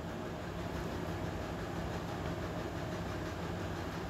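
A steady low hum with a faint hiss running evenly throughout, with no distinct events.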